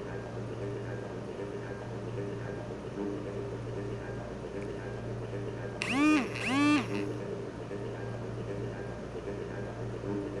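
Audio of a parody studio logo played through a laptop's speaker: a steady hum under a faint repeating pattern of tones, then about six seconds in two loud short sounds, each rising and then falling in pitch.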